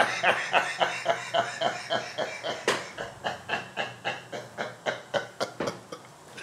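A man laughing hard, a long run of quick ha-ha pulses about five a second that slow and fade toward the end. A sharp click comes about two and a half seconds in.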